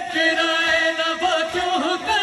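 A male noha reciter chanting through a sound system, holding long wavering notes in a lament melody.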